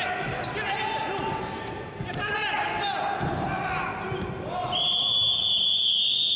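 Referee's whistle blown in one long, steady blast about five seconds in, stopping the wrestling. Before it, voices of coaches and spectators shouting.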